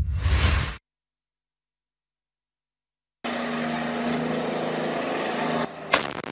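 A loud low rumbling rush cuts off abruptly under a second in, leaving about two seconds of dead silence. A heavy engine then runs steadily with a low hum, and a sharp bang comes just before the end.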